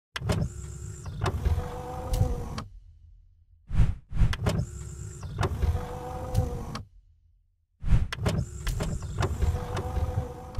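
Mechanical sound effects for boxes sliding into place: a motorised whirr with a steady whine, clicks and thuds. It plays three times, each pass about three seconds long, with a short whoosh in each gap.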